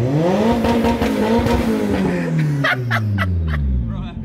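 Boosted Honda Civic's four-cylinder engine revved hard from inside the cabin. The pitch climbs quickly, holds high for a couple of seconds, then falls back toward idle near the end.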